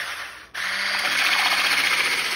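Braun electric hand whisk running in heavy cream, whipping it: a steady motor whir with the hiss of the whisk in the cream. The sound drops away briefly about half a second in, then runs steadily again.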